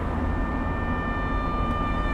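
Steady low rumble of a car's engine and road noise heard inside the moving car, with thin sustained high tones held over it.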